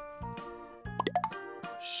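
Light children's background music with a quick cartoon 'plop' sound effect about a second in: a few short upward pitch glides over the steady tune.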